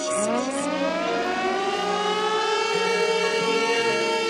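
A siren-style sound effect in a song's intro: a wailing tone sweeps up in pitch over about two seconds and then holds steady, over a faint musical backing.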